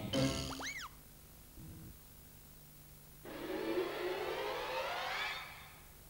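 Cartoon sound effects: a boing that rises and falls in pitch in the first second, then, after a nearly quiet gap, a long rising sweep of several tones together lasting about two seconds.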